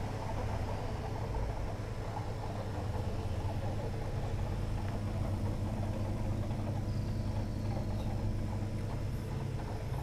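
Steady low electric hum of the tub's water-filter pump, even and unchanging throughout.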